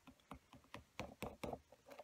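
Faint, scattered light taps and rustles of fingers pressing and moving on paper, about eight short clicks in two seconds.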